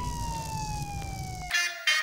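A siren wailing, its pitch falling slowly and steadily, over a low rumble. The rumble cuts off abruptly about three-quarters of the way through, and a brief louder sound follows near the end.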